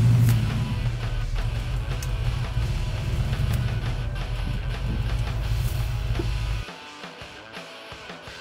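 A 396 big-block V-8 running steadily through its dual exhaust as the car pulls out, under background rock music. The engine sound cuts off abruptly near the end, leaving only the music.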